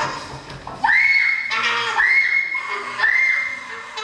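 Three high-pitched squeals about a second apart, each jumping up sharply in pitch and then held steady for most of a second.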